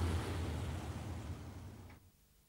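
Steady low rumble of traffic and street noise with a hiss, fading out steadily until it cuts to silence at the end.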